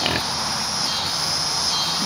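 Hogs snuffling and breathing close up at the fence: a steady noisy hiss with no distinct grunts.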